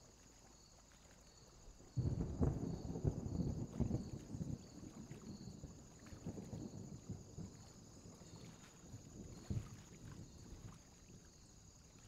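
Wind blowing on the microphone in uneven gusts, starting suddenly about two seconds in and dying down toward the end.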